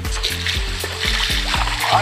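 Background music with a steady, repeating bass line, over the hiss and splash of water spraying from a boat's washdown hose nozzle.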